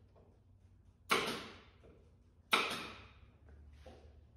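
Two sharp shots, about a second and a half apart, each followed by a short hiss that fades away.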